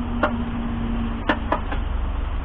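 A cleaning tool taps against a car's radiator and condenser fins while debris is cleared from the front of the radiator: four short, sharp clicks, one about a quarter second in and three close together after a second.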